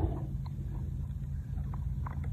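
Quiet background with a low steady rumble and a few faint, small clicks.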